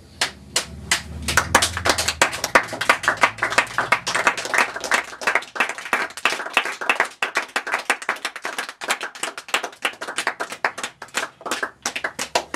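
Small audience applauding: many separate hand claps that thicken after a second or so into steady clapping. A low hum fades out under the first couple of seconds.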